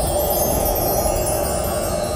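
A shimmering chime sound effect: a steady, dense wash of tinkling chimes, the kind used in a TV soundtrack for a magical sparkle as a deity vanishes.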